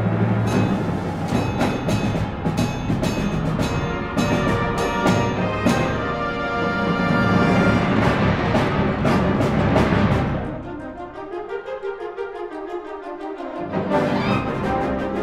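Concert wind band playing a loud passage with timpani and drum strikes under the brass. About ten seconds in it drops to a quieter held chord, then swells back up near the end.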